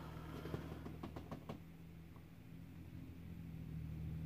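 Faint taps of a diamond-painting drill pen setting resin drills onto the canvas, a few in the first second and a half, over a steady low hum.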